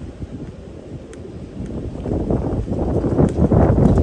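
Wind buffeting the microphone: an uneven low noise that grows louder over the last two seconds.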